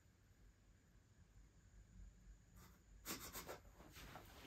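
Near silence: room tone, with a few faint short sounds about three seconds in.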